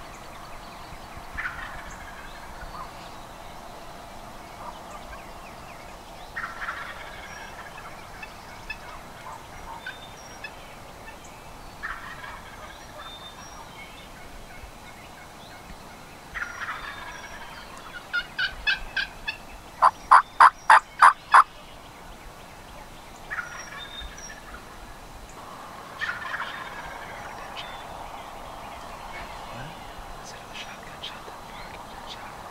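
Wild turkey gobbling again and again, roughly every five seconds. About two-thirds of the way in comes the loudest sound: a quick run of about seven evenly spaced turkey yelps.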